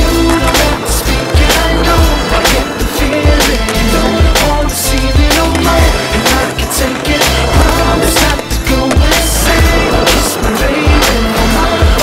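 Hip-hop music with a steady beat, with the sounds of a skateboard on concrete mixed in: urethane wheels rolling and the board knocking and grinding on ledges and ramps.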